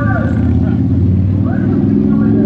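A loud, steady low rumble, with faint voices of people over it.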